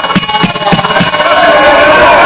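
The Speaker's electric bell in a legislative chamber ringing as a steady high ring over a pulsing rattle, most of it stopping about a second in; it is rung to call the House to order.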